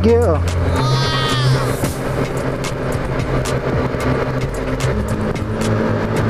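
A motorcycle being ridden at low speed, with wind buffeting a helmet-mounted microphone, under background music. About a second in there is a short wavering voice-like sound.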